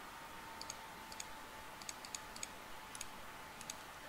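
Computer mouse clicking: about a dozen faint, sharp clicks at irregular intervals, some in quick pairs, over a faint steady high hum.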